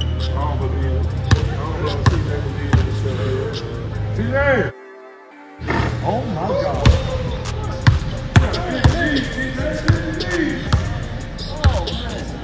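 A basketball bouncing on a hardwood gym floor in sharp, irregular thuds, over music and voices. The sound drops away briefly about five seconds in.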